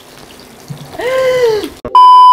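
A faint steady hiss, then about a second in a brief high-pitched vocal cry that rises and falls. At the very end, a loud steady test-tone beep cuts in.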